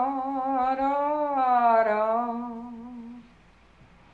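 An elderly woman humming a slow tune in a long held line of two drawn-out notes, fading out about three seconds in.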